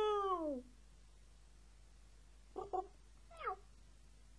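Vermeulen flute, a straight-blown slide flute, imitating animal calls from the score: a held note that slides down and ends about half a second in, then two short yelps and a quick downward slide near the end, like a meow.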